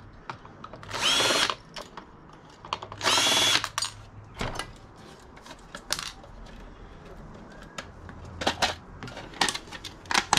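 Ryobi cordless drill spinning in two short whining bursts, driving out the small screws of an optical drive's metal casing. After that come scattered light clicks and clinks of the loosened casing and parts being handled.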